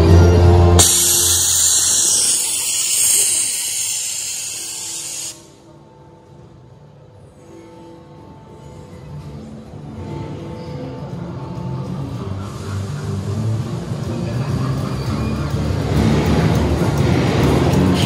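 Show soundtrack played over loudspeakers: music, cut across about a second in by a loud hissing rush that fades and stops at about five seconds. A quiet stretch follows, then the music builds back up toward the end.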